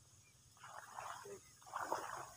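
Two short bursts of rustling as a man pushes into dense leafy plants and bends down among them.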